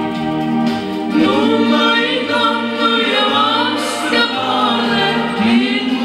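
A man and a woman singing a Romanian gospel hymn together into microphones, with vibrato in the voices. The voices come in about a second in, over a steady held note.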